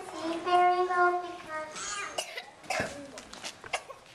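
A young child's voice speaking with drawn-out, held words, then several short sharp noises in the second half.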